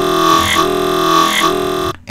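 Serum software synthesizer bass patch on the 'Creeper' wavetable, with oscillator A's mirror warp at about 80 percent, playing sustained notes that restart about once a second. The sound is vowel-like, with a sweep over each note from the LFO on the wavetable position.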